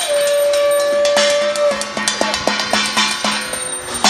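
A conch shell held on one steady note for about a second and a half, then a fast, irregular clatter of struck, ringing metal from hand bells being rung and beaten.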